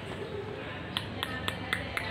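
Five quick knocks, evenly spaced about four a second, starting about a second in: knocking on a door.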